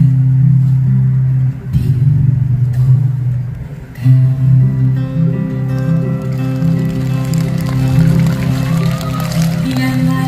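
Live steel-string acoustic guitar strummed in sustained chords, with a man's singing voice joining over it about halfway through.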